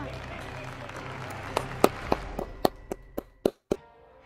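A quick, irregular run of about ten sharp hand claps over two seconds, starting about halfway in, over a low steady hum. A moment of dead silence cuts in near the end.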